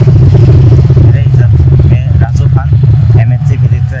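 A motor vehicle's engine running close by: a loud, steady low hum, with voices faintly over it.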